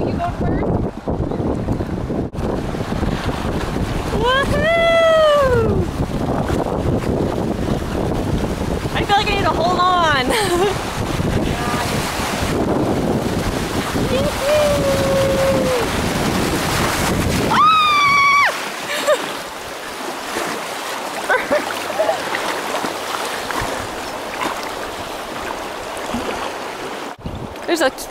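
Water rushing and splashing through small river rapids around an inflatable kayak, with heavy wind buffeting on the microphone for roughly the first two-thirds; after that the rumble drops away and a lighter water hiss remains. A few drawn-out vocal whoops or exclamations rise and fall over it.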